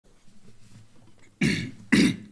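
A man coughs twice, sharply, about a second and a half in and again half a second later.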